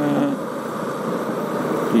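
Motorcycle riding along at a steady speed: an even mix of engine and wind noise.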